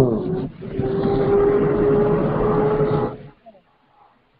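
Several voices praying aloud at once, blurred together over a phone or conference-call line, with one voice holding a steady tone. The sound cuts off about three seconds in.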